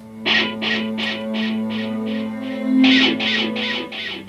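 Electric guitar played through an amplifier: a steady picked rhythm of about three strokes a second over a held low note, coming in a quarter second in.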